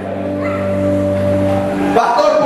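A low sustained chord held on a church keyboard, a steady organ-like tone that fades out near the end.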